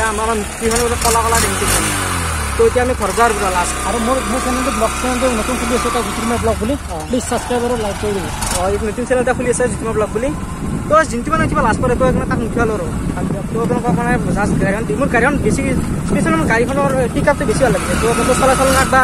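Men's voices over the steady low drone of a moving vehicle that they are riding in. The drone is clearest in the first few seconds.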